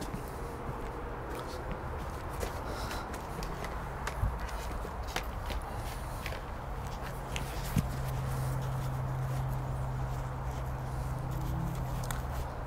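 Scattered light clicks, knocks and rustles of someone moving about and kneeling on a plastic tarp, over a steady low hum that grows louder about two-thirds of the way through.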